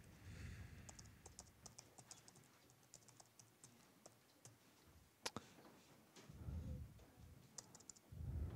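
Faint typing and clicking on a computer keyboard and mouse, a scatter of small quick clicks, with one sharper click about five seconds in and a dull low bump of handling a little after.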